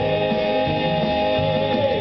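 Live southern gospel quartet music: the singers hold a long sustained note in harmony over electric guitar, bass and drums, releasing it just before the end.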